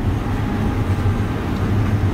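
Steady low background rumble with no speech, the same noise that runs under the talk.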